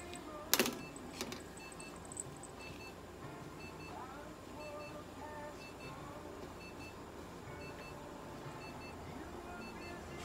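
Faint, repeating pairs of short high electronic beeps over a steady low background hum. A sharp knock comes about half a second in, and a lighter one just after a second.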